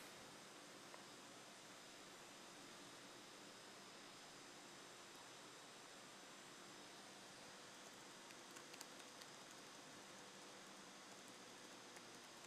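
Near silence: a faint steady hiss, with a few faint ticks about two-thirds of the way through.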